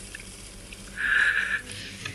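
A single half-second burst of narrow, radio-like hiss about a second in, against a quiet low background.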